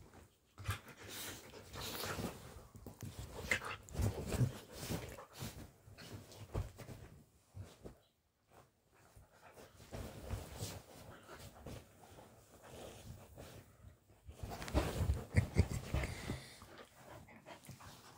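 Two dogs playing on a bed, scuffling on the bedding, with dog breathing and vocal sounds in irregular bursts; louder around four and fifteen seconds in.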